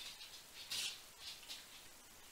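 Faint, brief rustles and scrapes of tarot cards being touched and slid on a cloth-covered table, the clearest a little under a second in.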